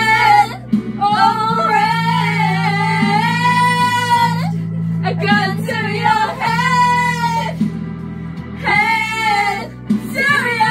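Women singing loudly along to a karaoke backing track, holding one long note about two seconds in.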